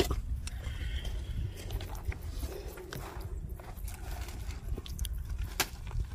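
Footsteps on a dirt road under a steady low rumble of wind on the microphone, with a few faint scuffs and clicks.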